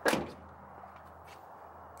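A single sharp knock right at the start that dies away quickly, followed by faint, steady background hiss and low hum.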